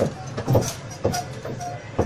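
A Dotto tourist road train rolling along a city street: a low running rumble with irregular rattling knocks from the carriages, about twice a second.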